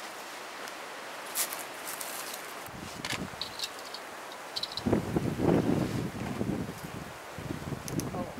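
Leaves rustling in the wind, with a few light clicks and two short faint high chirps. About five seconds in, an irregular rumble of wind buffeting the microphone comes in and is the loudest sound.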